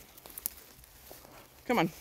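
Footsteps with light crackling and rustling in dry forest leaf litter and twigs, a few faint clicks about half a second in, followed by a woman's voice near the end.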